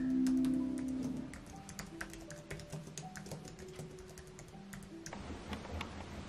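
Fingers typing on a slim, low-profile computer keyboard: quick, irregular key clicks over soft background music whose held notes fade out about a second in. The typing stops about five seconds in.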